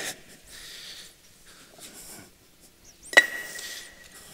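Faint shuffling and handling as a solid concrete VERSA-LOK retaining wall block is carried in a steel block-lifting clamp, then about three seconds in a single sharp clank with a short metallic ring as the block and clamp are set down on the wall.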